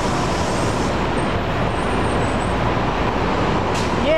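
Steady city street traffic noise: a continuous mix of passing cars and other motor vehicles with no single event standing out.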